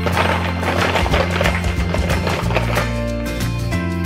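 Light background music, with a busy clattering rustle over it for about the first three seconds: plastic toy eggs being rummaged in a tin.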